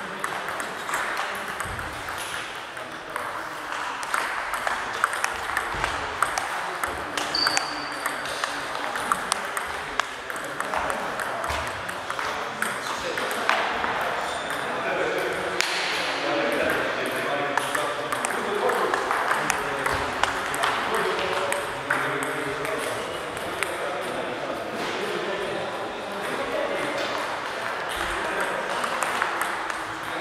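Table tennis balls clicking off bats and tables in quick, irregular runs of strokes during rallies, with several tables in play.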